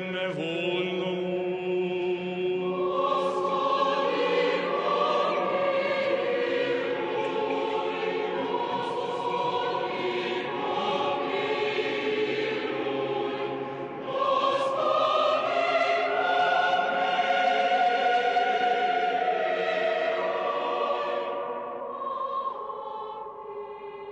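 A choir singing slow, held notes as background music, swelling louder about two-thirds of the way through.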